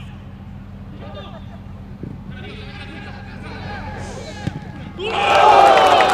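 Football players and bench shouting to each other across an open pitch during play, with a single thud about four and a half seconds in. About five seconds in, many voices break into loud yelling all at once: players and bench celebrating a goal.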